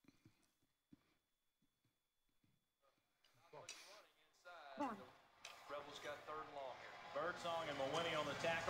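Film soundtrack played back: near silence with a few faint clicks for about three seconds, then voices fade in and grow louder, several overlapping toward the end.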